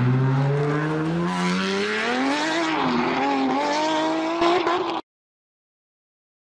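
Car engine accelerating. Its pitch climbs steadily, dips briefly, then holds high, and the sound cuts off suddenly about five seconds in.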